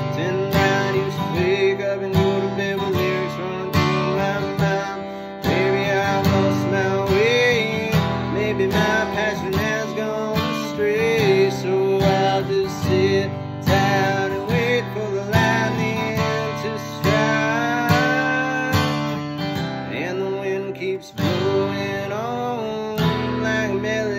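Steel-string dreadnought acoustic guitar strummed in a steady rhythm of chords, with a man's voice singing along at times.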